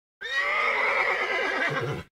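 A horse whinnying once: a single wavering call that slides down in pitch over nearly two seconds.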